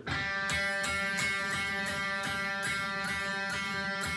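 Electric guitar's G string picked repeatedly on one ringing note, about three picks a second, as the pick moves forward along the string toward the pickup in search of its bright, balanced sweet spot.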